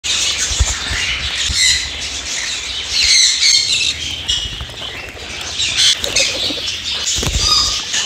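A flock of pet parrots, sun conures among them, chirping and squawking together, with wings flapping as birds flutter around.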